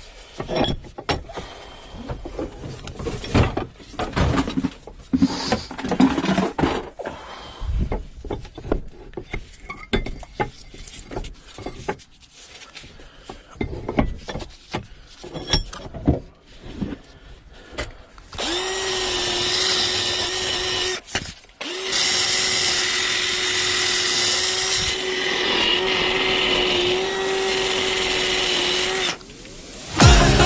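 Irregular knocks and scrapes of metal tools being handled and worked on a rusty valve wheel. About two-thirds of the way in, a cordless drill starts and runs at a steady pitch. It stops for a moment, then runs again until just before the end.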